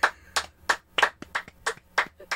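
Two people clapping their hands, a run of sharp single claps at about four a second, slightly uneven.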